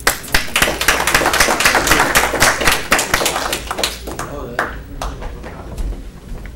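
A room of people applauding: dense clapping that starts at once, thins out about four seconds in and dies away near the end.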